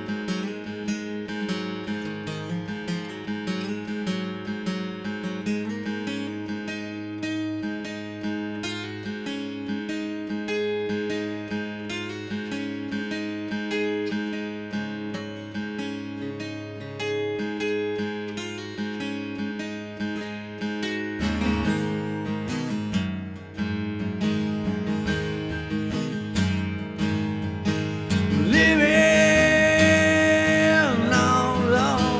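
An acoustic guitar picks and strums in an instrumental passage of an acoustic sludge/grunge rock song. About two-thirds of the way through, the music deepens with lower notes and grows louder. It is at its loudest near the end, with notes sliding up and down in pitch.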